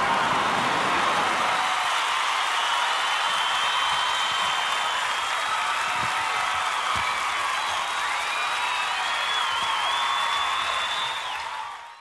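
Concert audience applauding, with the sound fading out near the end.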